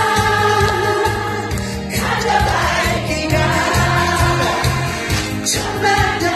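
A large crowd of women singing along together to a song with backing music, clapping in time.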